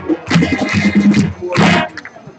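High school marching band playing, brass over drums, with a short loud chord near the end, after which the music stops.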